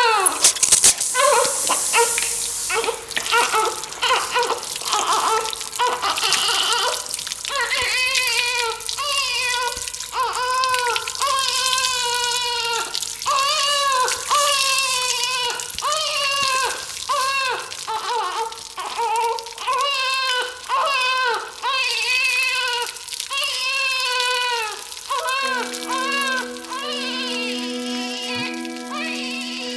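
A high voice in a drawn-out lament, rising and falling in phrases about a second apart, over water pouring from a tap. Near the end a held chord of background music comes in.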